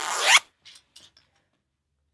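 A plastic zipper pulled once in one quick rasping zip, rising in pitch as it ends, about half a second in. A few faint clicks and rustles follow.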